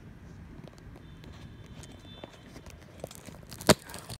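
Low steady background rumble with scattered light clicks, then a sharp knock near the end as the recording phone is picked up and handled.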